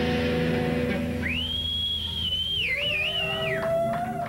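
Live rock band's chord ringing out, with a high whistling tone that glides up about a second in, wavers, and falls away near the end, over a slower rising lower tone.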